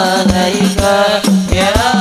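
Hadroh-style sholawat music: rebana frame drums and a large bass drum beating a steady rhythm of about four strokes a second under a wavering, sustained melody line.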